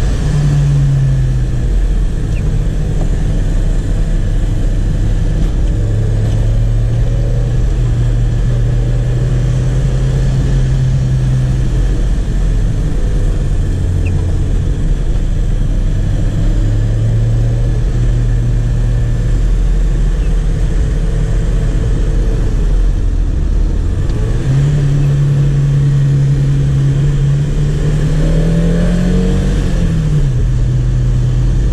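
Chevrolet Chevette 1.6's four-cylinder engine driving the car, heard from inside the cabin. Its note holds steady for long stretches and steps up and down with the gears. It climbs in the last few seconds and drops off sharply near the end.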